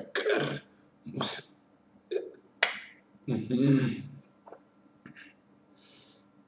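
A man's short wordless vocal sounds and breathy exhalations, about five bursts, the longest a voiced sound a little after three seconds in, over a faint steady hum.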